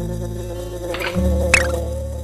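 Steady buzzing of a cartoon honeybee sound effect over children's background music with low bass notes, with a short bright effect about a second in and another, falling in pitch, about a second and a half in.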